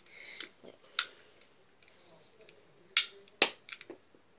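Sharp plastic clicks and snaps from a toy spud gun being worked and fired: one click about a second in, then the two loudest snaps near the three-second mark less than half a second apart, followed by a few small rattling clicks.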